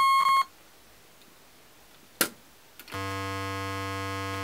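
Square-wave tone from a DIY modular synth oscillator patched through a Lockhart wavefolder module. A higher buzzing tone cuts off suddenly about half a second in. A sharp click comes a little after two seconds, and then a low, steady buzzing tone with many overtones comes in about three seconds in. The signal drops in and out, which the builder puts down to a bad jack or cable.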